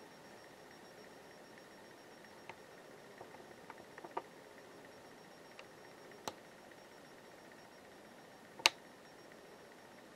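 Quiet room tone with a few faint clicks and one sharper click near the end, from a handheld camera being handled while it zooms in.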